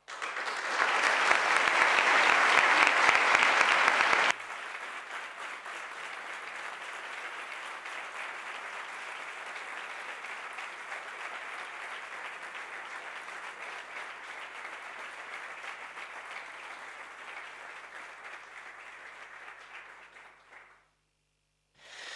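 Audience applauding. The applause is loud for about four seconds, then drops suddenly to a lower level, carries on steadily and dies away near the end.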